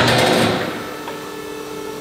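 The electro-hydraulic power unit of a flush-mounted drive-on scissor lift starts abruptly with a short clatter, then runs with a steady hum.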